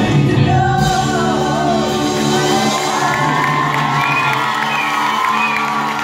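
Live soul band with string section and a lead singer with backing vocalists holding the closing chord of the song, while the audience starts to whoop and cheer over it from about halfway through.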